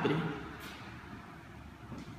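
Faint, steady outdoor background noise coming in through a freshly opened window, with no distinct events. A spoken word trails off right at the start.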